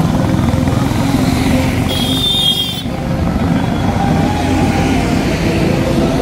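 Motorcycle and road-traffic engines running steadily, a dense low rumble. A brief high-pitched tone sounds about two seconds in.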